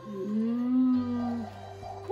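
A person's drawn-out vocal "ooh", rising at first and then held level for about a second, over a steady low hum.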